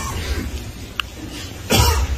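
A man coughs once, briefly, near the end, over a low steady hum, with a faint click about halfway through.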